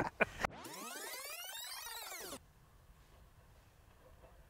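An edited-in sound effect: a sweeping, many-layered tone that arcs up and falls back over about two seconds, then cuts off suddenly, leaving near silence.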